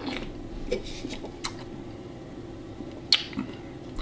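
Beer being sipped and swallowed from a glass, with soft mouth and swallowing noises and a few small clicks, one sharper click about three seconds in, over a faint steady hum.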